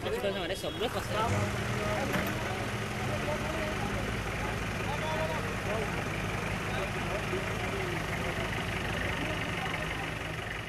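Off-road jeep engines running steadily in the mud, with people's voices calling out over them.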